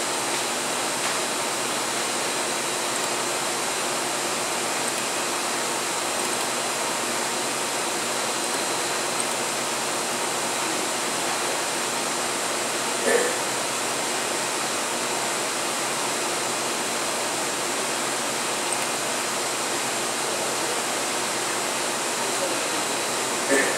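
Steady, even background hiss with faint high steady tones in it, and one brief short sound about 13 seconds in.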